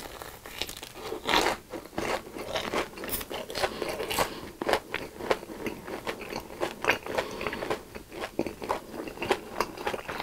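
Close-miked bites and chewing of a sugar-coated, deep-fried Korean corn dog: crisp crunches of the fried batter crust, the loudest about a second and a half in, followed by steady crunchy chewing.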